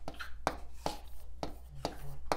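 Marker pen tapping and stroking on a writing board as an equation is written: a series of short, sharp taps, about two a second.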